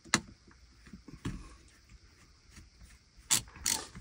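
Faint clicks and ticks of a small screwdriver and fingers working a screw into a laptop's heatsink fan assembly, with a sharp click just after the start and two louder rustling clicks near the end.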